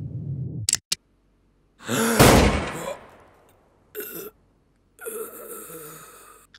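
A single loud pistol shot about two seconds in, dying away over about a second. It is followed by a wounded man's short gasps and a groan.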